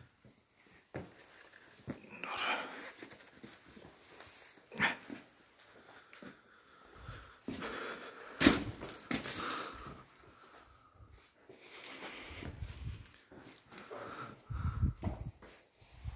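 Breathing and scuffs of hands, shoes and clothing on rock as a person clambers through a tight cave passage, with a few sharp knocks, the loudest about eight and a half seconds in.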